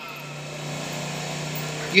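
A steady low hum with faint background noise in a pause between a man's phrases, with his voice coming back in at the very end.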